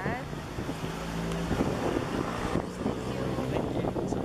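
A motor engine running steadily through the first half, then fading, with wind rumbling on the microphone.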